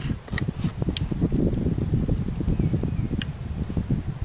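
Wind buffeting the microphone outdoors: an irregular low rumble, with a few faint clicks.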